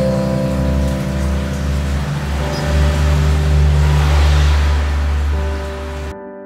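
Music with held, sustained notes over the steady hiss of heavy rain.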